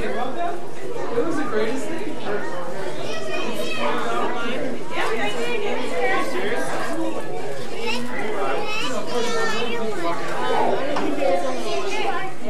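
Crowd chatter: many overlapping voices of adults and children talking and calling out at once.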